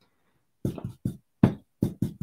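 A foam blending brush knocking against a plastic stencil on paper as ink is worked in: about five short knocks in quick, uneven succession, starting about half a second in.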